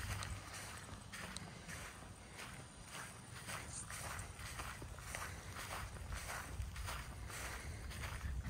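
Footsteps walking across dry, dormant grass, a soft crunch about twice a second, steady throughout.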